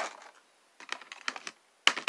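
Small cosmetic items clicking and knocking against clear plastic storage bins as they are set in and moved around: a run of short, sharp clicks after a brief pause, the loudest near the end.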